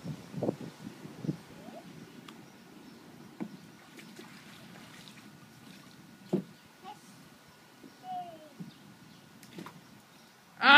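Small splashes and sloshes of water in a shallow plastic wading pool as a toddler slaps at it with her hands: a few separate splashes, a second or more apart. A small child's voice makes a few brief, faint sounds.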